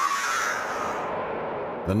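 Rocket motor of a V-2 (A4) ballistic missile firing at lift-off: a steady rushing roar that starts suddenly, its highest hiss fading after about a second.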